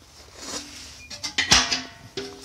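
The hinged steel end of an old air-compressor tank being worked by hand: a short metallic creak, then one loud clank about one and a half seconds in, with the steel ringing briefly after the hit.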